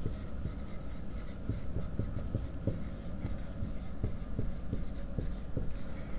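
Marker writing on a whiteboard: a quick, uneven run of short strokes as two words are written out.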